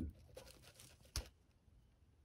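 Faint handling noises from a gloved hand holding a freshly flared brake line, with one sharp click a little over a second in.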